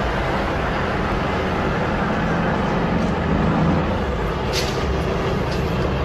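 Steady street traffic noise: a continuous rumble of vehicle engines with a low hum, at an even level throughout.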